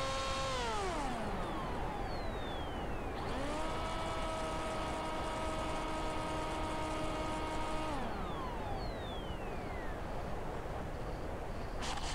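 Brushless electric motor (Emax RS2205) of a flying wing, heard from the onboard camera over wind rush: its whine drops as the throttle is cut about a second in, rises again and holds at about three seconds, and winds down again at about eight seconds on the landing approach. Near the end a short sharp knock as the plane touches down in grass.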